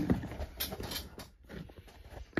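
A few light knocks and clicks of handling: a hard plastic card slab and tools being moved about on a table, growing quieter after about a second.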